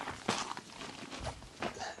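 Soft rustling and brushing as freshly picked runner beans and their leaves are handled over a jute shopping bag, with a couple of brief louder rustles.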